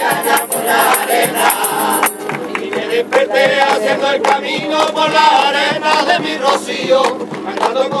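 Rociero pilgrim choir of mixed voices singing a Rocío song together over a steady rhythmic beat, with bright jingling percussion in the first couple of seconds.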